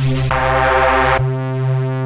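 A synthesizer preset from the Maschine Chromatic Fire expansion being auditioned: a loud, sustained synth chord whose low end changes about a second in as the next preset in the list sounds.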